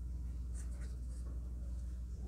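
Faint scratchy rustling of an embroidery needle and thread being pulled through a crocheted amigurumi piece as fingers handle the yarn, over a steady low hum.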